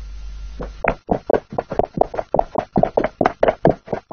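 Horse hooves galloping: a quick run of knocks, about five a second, starting about a second in.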